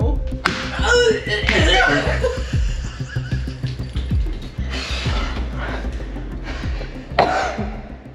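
Women squealing and laughing in excited bursts over background music.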